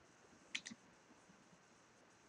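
Two quick computer mouse clicks in close succession about half a second in, against near silence.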